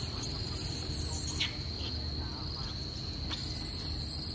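Insects trilling steadily on one high pitch, with two short sharp clicks, one about a third of the way in and one near the end.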